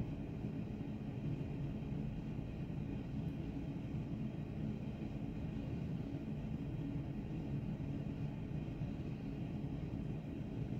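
Steady low background hum, even throughout, with no distinct sounds.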